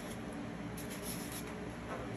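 Faint scratchy rubbing as a foam wig head is handled against a metal coat stand, over a steady low room hum.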